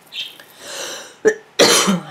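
A woman coughing: a short cough and a long breath, then a loud cough near the end.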